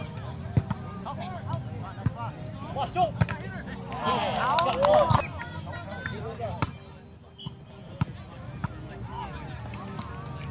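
Men's outdoor volleyball play: players calling and chattering, with a loud burst of several voices shouting together about four seconds in. Sharp slaps of hands striking the volleyball come every second or so, the strongest about six and a half seconds in, just after the server tosses the ball.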